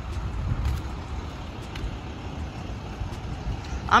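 Steady low rumble of outdoor traffic and vehicle noise across a store parking lot, with a few faint clicks.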